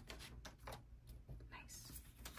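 Faint handling of paper banknotes: a handful of short, crisp rustles and flicks as bills are pulled from a stack and tucked into a paper envelope.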